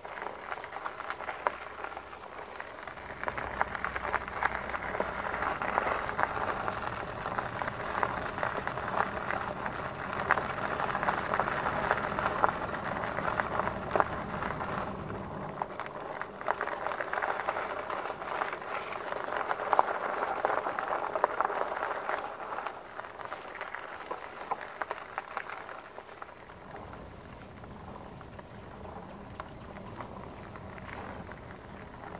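Fat tyres of a RadMini e-bike rolling over a dirt and gravel trail, pedalled with the motor switched off: a steady crackling crunch full of small ticks that grows quieter near the end as the bike slows.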